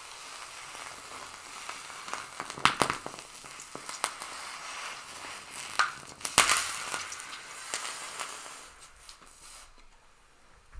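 Small pieces of sodium metal reacting violently with hot water: a steady sizzling hiss broken by several sharp pops, the loudest about six and a half seconds in as the reaction flares up, then dying away near the end.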